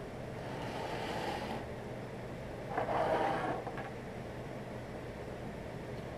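A heavy stone slab sliding across a wooden tabletop, then a louder scuff of handling about three seconds in, with a steady air-conditioning hum underneath.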